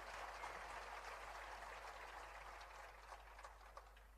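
Faint scattered applause from the audience, dying away into near silence.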